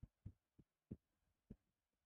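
Near silence: quiet room tone with a few faint, short low thumps about half a second apart.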